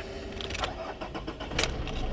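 Nissan Pathfinder's YD25 turbo-diesel being cranked by the starter and catching, settling to idle within the two seconds, started just after the glow-plug pre-heat has switched off. It grows louder near the end as the engine fires.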